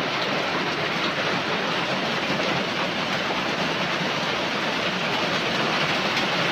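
Heavy rain falling steadily: an even, unbroken hiss of a downpour.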